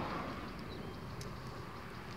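Faint, steady background noise with a low hum in a pause between spoken words, and a brief faint high tone about three quarters of a second in.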